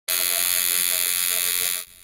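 Coil tattoo machine buzzing steadily as the needle works on skin, cutting off suddenly near the end.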